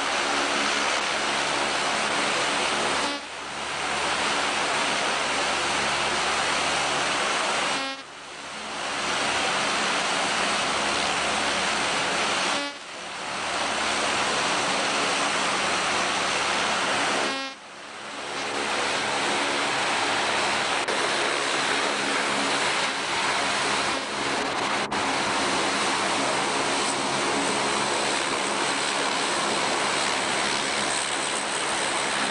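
Aircraft turbine engines running on an aircraft carrier's flight deck: a loud, steady roar with a steady whine in it. It drops out briefly four times and comes straight back.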